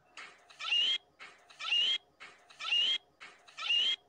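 The same short, shrill scream played four times in a row, about once a second, identical each time: an edited loop. Each scream rises to a high squeal at its end.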